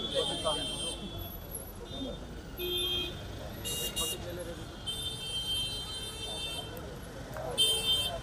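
A shrill whistle blown in a run of short and longer blasts, with street traffic and faint chatter underneath.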